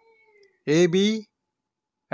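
A voice saying two spelled-out letters, 'A, B', once, about halfway through; the rest is quiet apart from faint steady tones at the start.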